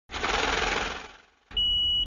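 An intro sound effect: a burst of hiss-like noise with a low rumble that fades away, then a steady high-pitched beep held for about half a second and cut off abruptly.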